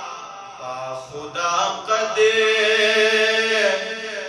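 A man's voice chanting in a melodic religious recitation style, amplified through a microphone. After a softer first second it rises into long held notes.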